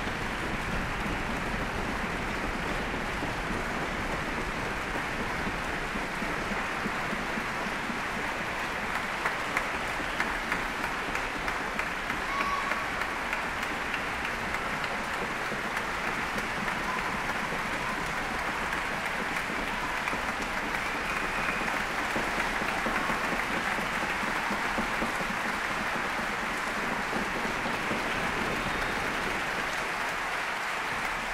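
Large concert audience applauding, a dense, steady clapping that holds at an even level throughout.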